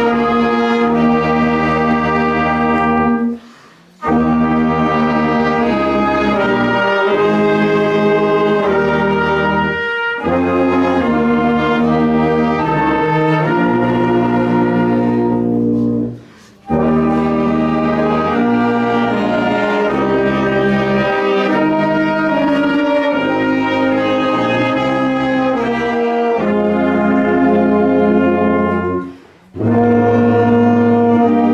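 A marching band of brass instruments and saxophones plays a tune in full, sustained chords. The music drops out for a moment three times.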